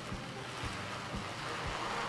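Iron-on transfer paper backing being peeled slowly and steadily off a freshly ironed cotton T-shirt: a soft papery rustle that grows louder toward the end.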